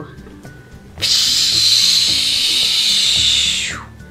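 Edited-in hissing transition sound effect: a loud, steady high hiss starts abruptly about a second in and ends with a falling sweep near the end. It marks the toy vehicle appearing.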